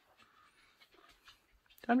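Faint soft ticks and rustle of metal circular knitting needles working yarn, quiet under a voice that starts near the end.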